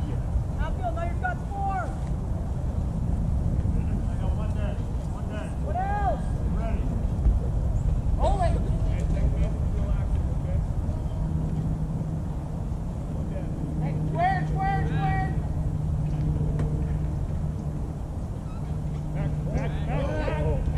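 Scattered distant shouts and calls from players on a baseball field, short arched yells every few seconds, over a steady low rumble. A low steady hum joins about halfway through.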